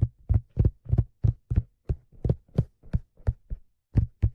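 Fingertips tapping on a black leather fedora: an even series of dull, low taps, about three a second.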